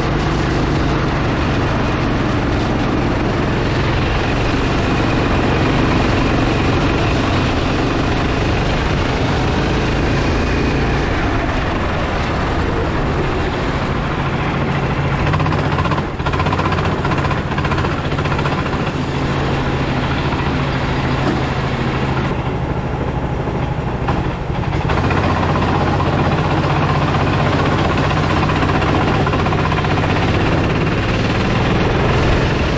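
Racing kart engine heard onboard, running hard through a lap with wind noise on the microphone. The engine note sags briefly about halfway through, eases off for a few seconds near the end, then picks up again.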